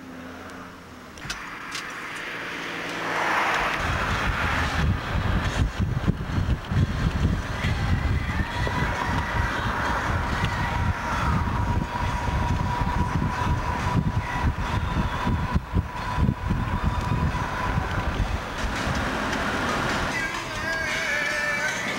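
A moving car's road noise and wind rumbling on the microphone, coming up strongly about three seconds in and holding, with a faint steady whine through the middle.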